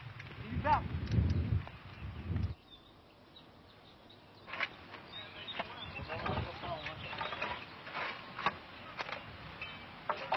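A low rumble for the first two and a half seconds, then after a short quiet, irregular knocks and scrapes of hoes striking stony soil.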